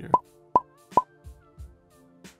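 Three short 'pop' sound effects, about half a second apart, over soft background music.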